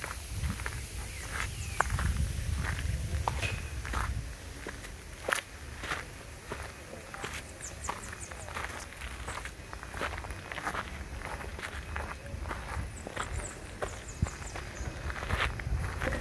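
Footsteps walking uphill on a grassy dirt path, an irregular run of short scuffs and crunches with a low rumble beneath.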